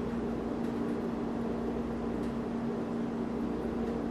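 Steady low hum with a faint hiss behind it, unchanging throughout: the room's background noise.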